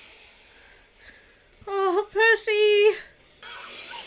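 A high-pitched voice making three short wordless cries about halfway through, after a quiet start.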